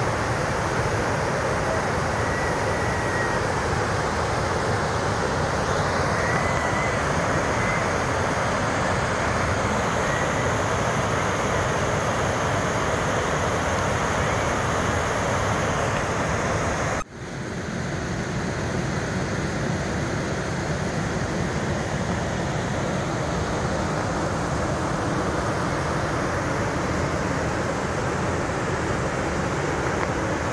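Waterfall: water rushing steadily down sloping rock ledges into a pool, a constant loud rush of water. The sound drops out suddenly for a moment a little past halfway, then comes back.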